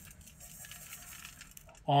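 Gold dust and flakes sliding off a metal pan and pouring into a bowl on a scale: a faint, scattered trickling rattle.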